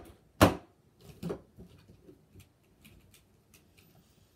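A loud sharp smack about half a second in, then lighter plastic knocks and clicks as wrestling action figures are handled on a toy wrestling ring.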